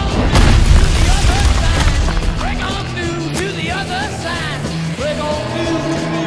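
Cinematic trailer music: a heavy low boom with a rush of noise at the start, the deep bass falling away after about two seconds, then a melody of short sliding notes over a steady bass line.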